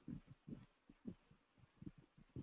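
Near silence: room tone with a few faint, low, irregular thumps.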